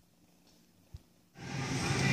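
Near silence with one faint click about halfway, then the steady background noise of a grocery store, with a low hum, fades in during the last half-second or so.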